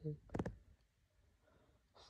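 Two or three sharp clicks in quick succession about half a second in, then faint room tone.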